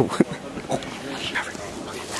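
Young men laughing in short, breathy bursts.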